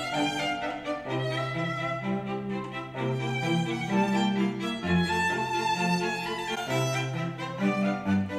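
Classical string music with violins over sustained cello and bass notes, played back through a pair of Genelec 8020D two-way studio monitors and picked up by a microphone in the room.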